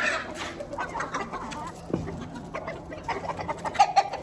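Flock of chickens clucking, with a louder short call just before the end.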